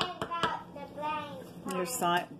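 A voice talking, with a few sharp knocks in the first half second from a wooden spoon striking the ceramic slow-cooker crock as thick hot-process soap is stirred.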